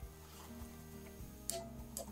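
Faint background music, with a single sharp click about one and a half seconds in from the PEX clamp crimping tool squeezing down on the clamp.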